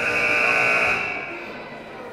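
Gymnasium scoreboard buzzer sounding one loud, steady blast that starts abruptly, holds for about a second and then fades; it is the signal that a timeout is ending.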